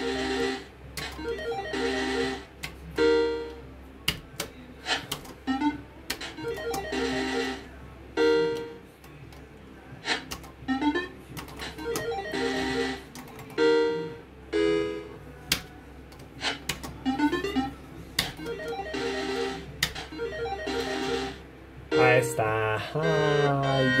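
Pirate 2 video slot machine playing its electronic game sounds over several spins in a row: short beeping tone patterns, a hissing whirr every few seconds and sharp clicks. Near the end a louder win melody with gliding tones starts up as a 200 win lands.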